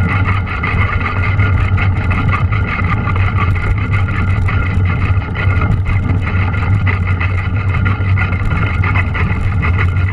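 Mountain bike ridden at speed over a snowy, muddy trail: a steady low rumble of wind and tyre noise on the camera's microphone, with a constant patter of small rattles and ticks from the bike.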